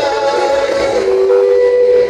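Live band music amplified over a stage sound system: a melodic line that settles into a long held note about a second in.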